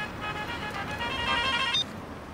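Mobile phone ringtone: a quick electronic melody of short high notes, ringing for an incoming call and cutting off suddenly near the end as it is answered.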